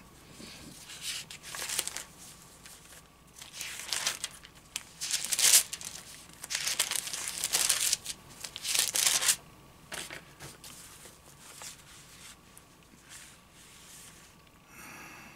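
Thin Bible pages being turned, a series of papery rustles through the first two-thirds, growing fainter near the end.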